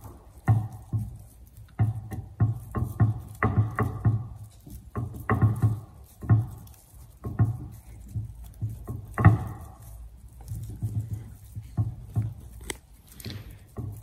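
Bonsai scissors snipping San Jose juniper foliage: an irregular run of sharp snips, about one or two a second, as the shoots are trimmed back.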